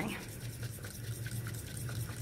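Bamboo matcha whisk (chasen) swished rapidly back and forth in a bowl of matcha and a little warm water, a fast, even, scratchy brushing sound. The whisking is dissolving the fine powder so that it does not form lumps.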